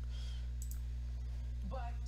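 Steady low hum, with a couple of faint clicks a little under a second in; a single spoken word near the end.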